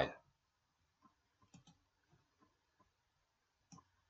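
Two faint computer mouse clicks against near silence, one about a second and a half in and one near the end.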